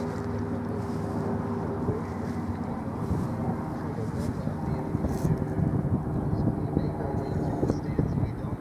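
A steady engine hum that fades out about halfway, under a rough low rumble and faint, indistinct voices.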